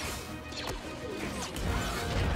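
Action-scene sound effects from a TV episode: several sharp crashes and hits with swooshes, over background music.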